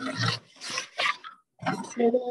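A child's voice making four short, rough bursts of sound through the video-call audio, not clear words.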